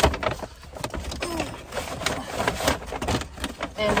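Paper shopping bags rustling and crinkling as they are grabbed and moved about inside a car, with irregular small knocks and brushing from the handling.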